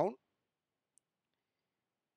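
A single faint, very short click about a second in, otherwise near silence, after the last spoken word ends at the very start.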